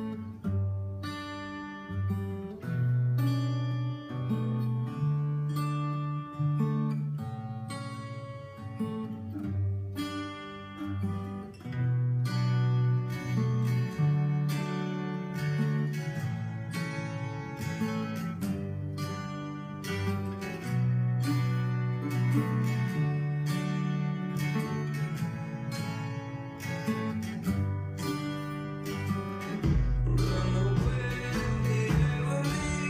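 Cutaway acoustic guitar played through a repeating chord pattern, the bass note shifting every second or two, with a fresh string attack several times a second.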